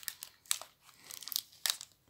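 Crinkling of a Jet's snack bar's plastic wrapper being handled and opened: a series of sharp, irregular crackles.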